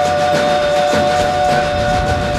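Boi de mamão folk band music: a steady held chord over drum and percussion beats.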